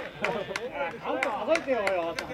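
Men's voices calling out, with a run of sharp clicks and knocks among them.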